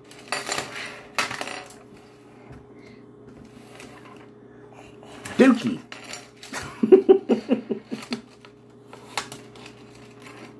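Plastic clacking and scraping as a child's toy drawing board is handled, strongest in the first second or so. About halfway there are short vocal sounds, then a quick run of them a second later.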